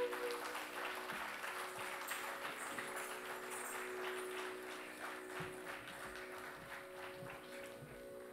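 Audience applauding after the end of a Bharatanatyam piece, fading slowly away, with a faint steady drone held underneath.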